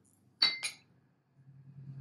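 A metal spoon clinks twice against a glass mixing bowl about half a second in, each strike ringing briefly, while stirring a thick walnut and eggplant mixture.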